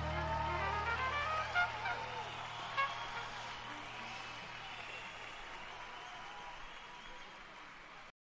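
A concert crowd cheering and whistling as the band's last low note dies away in the first second or so. The whole sound fades down steadily and stops abruptly at the end.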